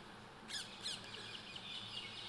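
Small songbirds chirping faintly: a few short, high, downward-sweeping chirps, the clearest about half a second and just under a second in, with fainter ones after.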